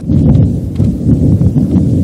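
Low, rough rumble of outdoor field audio: wind buffeting the microphone, with a few faint knocks.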